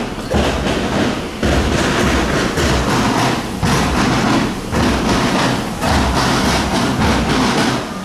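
Marching band drums playing a steady cadence, a beat about once a second, with snare hiss over the low bass-drum thumps.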